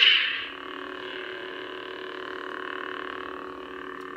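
Lightsaber sound effect: the end of the ignition surge fades in the first half second, then the blade settles into a steady hum.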